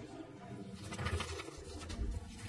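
Quiet murmur of voices and shuffling movement in a large legislative chamber while a division vote is counted.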